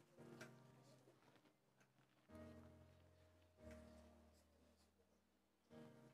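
Faint background music of soft, sustained low notes, with new notes entering a little over two seconds in, again about halfway, and near the end.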